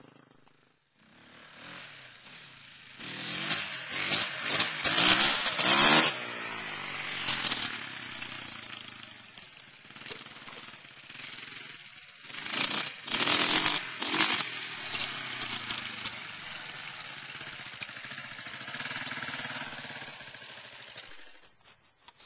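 Dirt bike engine revving up and down as the bike is ridden. It is loudest about four seconds in and again around thirteen seconds, and fades off toward the end.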